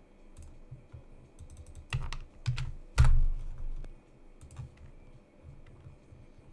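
Scattered clicks and taps from a computer keyboard and mouse at a desk, with one louder knock about three seconds in.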